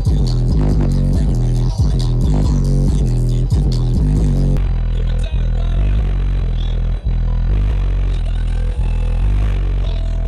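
Bass-heavy music played very loud through a car stereo with four DS18 15-inch subwoofers in a Q-Bomb box. The system is tuned to peak around 35–40 Hz. About four and a half seconds in, the sound changes abruptly to a heavier, steadier deep bass with less of the melody on top.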